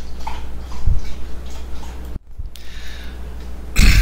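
Steady low electrical hum with faint room noise in a lecture recording, a soft low thump about a second in and a brief dropout a little after two seconds; a man starts clearing his throat right at the end.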